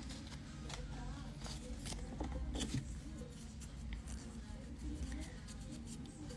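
Faint light rustles and small clicks of hand work on a cured gel nail as its sticky dispersion layer is wiped off, over a low steady hum.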